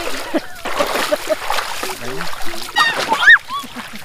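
Shallow sea water splashing around a person's legs as he wades, with a few spoken words over it.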